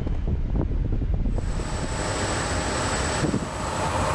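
Wind buffeting the microphone on a ship's open deck at sea, a steady low rumble. From about a second in, a wider hiss of wind and sea joins it.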